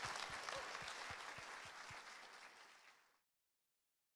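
Audience applauding, fading away until it is gone a little over three seconds in.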